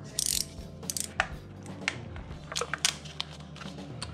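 Plastic packaging crinkling briefly, then a handful of sharp separate clicks from a snap-off utility knife as its blade is pushed out notch by notch.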